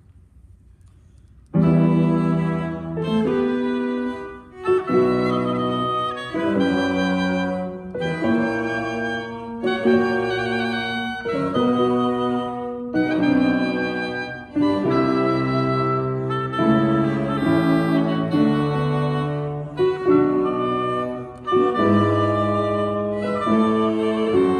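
Instrumental ensemble playing a sinfonia, starting abruptly about a second and a half in: loud sustained chords in short phrases separated by brief breaks.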